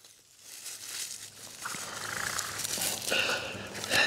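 Leafy plant stems and foliage rustling and crinkling as they are handled and cut back in a garden bed. It starts about half a second in and grows busier.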